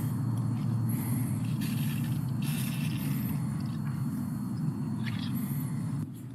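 Handheld pump sprayer spraying herbicide onto a freshly cut shrub stump in a few short hisses, over a steady low outdoor rumble.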